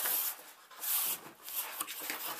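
Cardboard box scraping and rubbing as hands pull apart its sides to work a packed canvas print loose. There are two louder rustling scrapes, one at the start and one about a second in.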